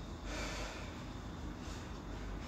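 A woman breathing: one breath about a third of a second in and a fainter one near the end, over faint room noise.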